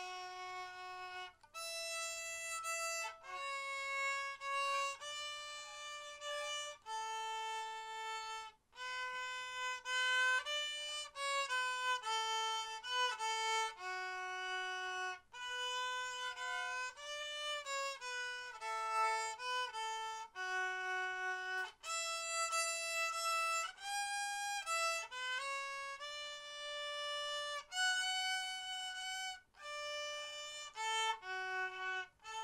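Solo violin played by a young child: an unaccompanied melody of single held notes, each lasting about half a second to two seconds, with short breaks between phrases.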